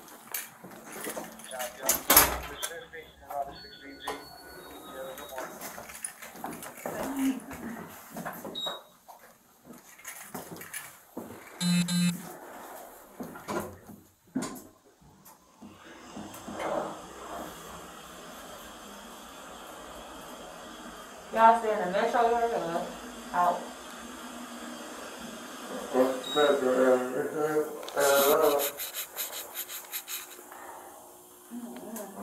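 Body-worn camera handling noise and clicks while walking, with a few short beeps. Then a steady hum inside an elevator car, with short stretches of indistinct voices.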